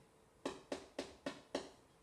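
Whiteboard marker striking and drawing on a whiteboard: five short, sharp taps in quick succession, about three a second.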